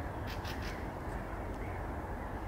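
A few short, harsh bird calls in the first second, over a steady low rumble of outdoor background.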